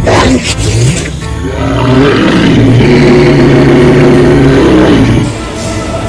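Horror film score opens with a sharp loud hit, then a man's long, loud roar of a fanged vampire holds for about three seconds over the music before cutting off and leaving the score.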